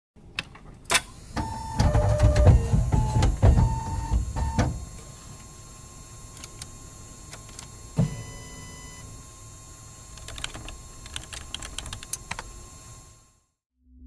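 Electronic sound effects for a title animation: digital glitch noises and short computer-style beeps at stepping pitches over a low rumble for the first few seconds. Then quieter ticks and clicks, a single thump about eight seconds in, and a quick flurry of clicks near the end before it fades out.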